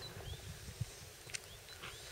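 A bird chirping faintly a few times in short rising notes, over a low outdoor rumble, with a couple of soft clicks.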